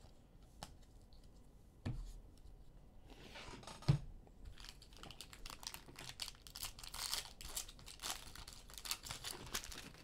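Plastic wrapper of a trading-card pack being torn open and crinkled by hand, a dense crackly rustle through the second half. Two soft thumps come before it, about two and four seconds in.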